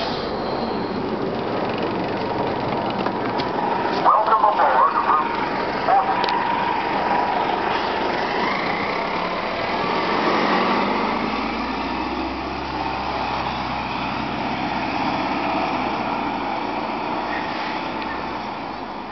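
A 1999 Gillig Phantom transit bus, with a Detroit Diesel Series 50 four-cylinder diesel and an Allison B400R automatic, pulling away from a stop. The engine note rises to its loudest about ten seconds in, with a deep rumble under it, then fades as the bus heads off.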